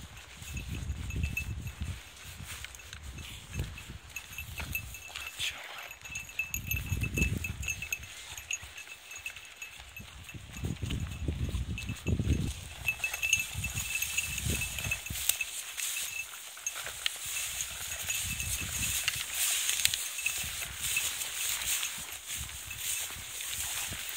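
Walking through tall dry grass: rustling stalks and footfalls, with uneven gusts of low rumble on the microphone, heaviest in the first half. The rustling grows thicker in the second half.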